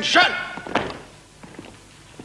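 A man's voice calls out briefly at the start, then a single sharp knock a little under a second in, followed by a few faint boot steps on cobbles.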